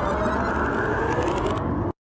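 A car running: a steady rush of noise with a faint whine slowly rising in pitch, cut off abruptly just before the end.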